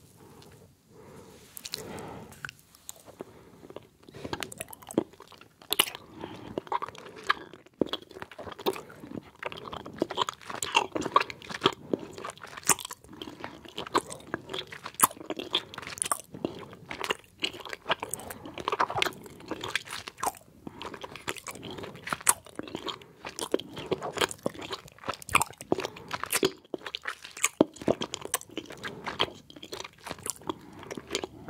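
Close-miked chewing of soft gummy candies: wet, sticky mouth sounds and sharp smacking clicks, many to the second. Quieter for the first few seconds as the candy goes in, then a dense, uneven run of clicks.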